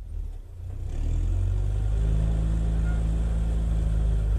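Car engine and road noise swelling over about the first second, then running steadily as a low drone.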